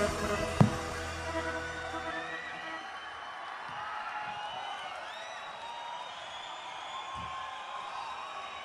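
A live rock band's held chord rings out, with one sharp hit about half a second in, and dies away about two seconds in. A large crowd then cheers and whoops through the pause in the song.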